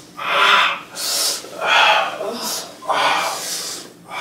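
A person breathing hard: about five loud, ragged breaths in and out in quick succession, each a noisy rush of air.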